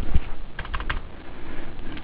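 Computer keyboard keystrokes: a few clicks, then a quick run of taps a little past the middle, as data is typed into accounting software and the entry moves from field to field.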